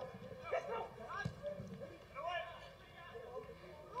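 Faint speech: quiet snatches of a man's voice between stretches of commentary, over low background noise.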